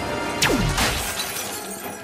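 Movie action soundtrack: a sci-fi energy gun shot, a quick zap falling steeply in pitch about half a second in, with glass shattering, all over loud background music.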